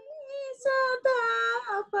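A high female voice singing Indian sargam solfège syllables (sa, ri, ga, ma, pa) note by note as a scale exercise, holding each note briefly and stepping between pitches.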